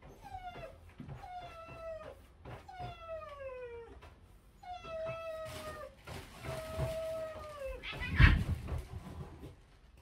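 Dog whining in five long, high calls, each falling in pitch: it whines because it is kept away from its owner. A loud thump about eight seconds in.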